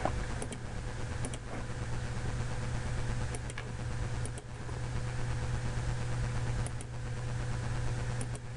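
A steady low mechanical hum with a few light mouse clicks, some in quick pairs, as lines are drawn in CAD software.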